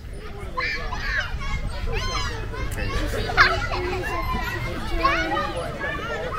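Children's voices calling out at play on a playground, several high-pitched voices overlapping, over a steady low rumble.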